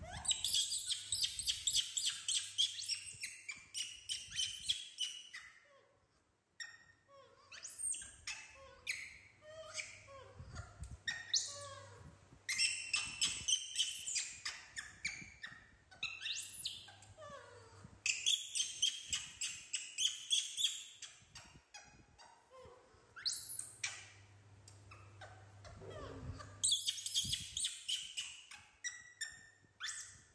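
Small animals squeaking in quick runs of high chirps, repeated in about five spells of a few seconds each.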